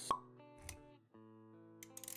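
Intro-animation sound effects over background music: a sharp pop just after the start, the loudest thing here, then a softer hit with a low thud a little before the middle. Held music notes carry on underneath, dropping out briefly around the middle before returning.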